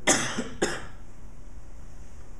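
A person coughing twice, two short coughs about half a second apart right at the start.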